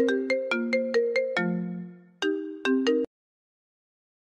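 Short electronic ringtone melody of bright, bell-like notes: a quick run of notes, then a longer low note that fades, a brief gap, and a few more notes before it cuts off abruptly about three seconds in.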